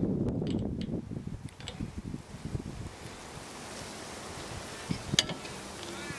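Wind buffeting the microphone as a low rumbling noise, with a few light clicks of metal parts handled in the first second or so and one sharp click about five seconds in.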